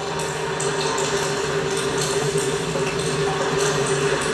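Steady low drone of two held tones, part of the TV episode's soundtrack playing between lines of dialogue.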